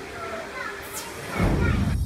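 Children's voices and chatter around a water-park pool, then a quick falling whoosh and, from about one and a half seconds in, a loud low-pitched hit of an edited glitch transition effect.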